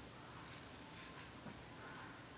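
Faint scratchy rustling of hair being handled, with two brief scratches about half a second and one second in.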